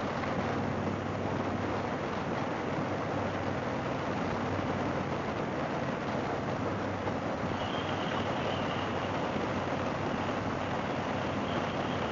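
A 2004 Harley-Davidson Fat Boy's air-cooled V-twin running steadily at cruising speed, under heavy wind rush on the handlebar-mounted camera's microphone.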